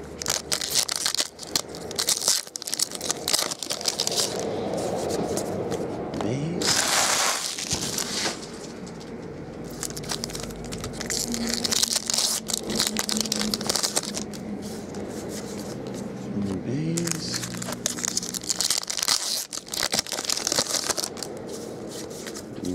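Foil trading-card pack wrappers crinkling and tearing as packs are torn open by hand, with cards riffled and slid against each other. The rustle comes in louder bursts, about 7 s in, from 12 to 14 s, and from 18 to 20 s.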